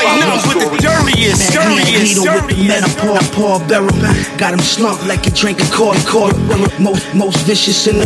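Hip hop track with rapped vocals over a beat with a steady kick drum.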